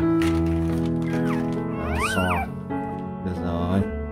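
Newborn Rottweiler puppy squealing in a few short cries that rise and fall in pitch, the loudest about two seconds in, over background music.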